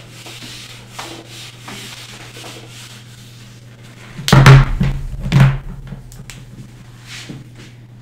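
Whiteboard duster rubbing across a whiteboard in light, repeated strokes, erasing writing. About halfway through come two loud, short noises roughly a second apart.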